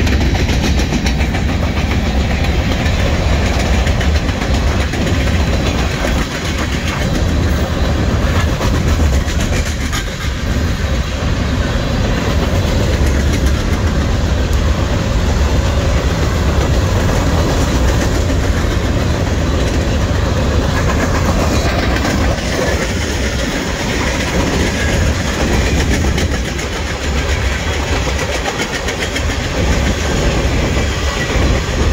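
A freight train's covered hopper cars rolling past at close range, the steel wheels rumbling steadily on the rails with a continuous clickety-clack over the rail joints.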